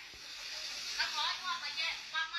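A breathy hissing sound over the first second, then high-pitched voices talking from about a second in.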